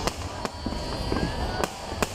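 Aerial fireworks going off: several sharp bangs at irregular intervals over a continuous noisy background.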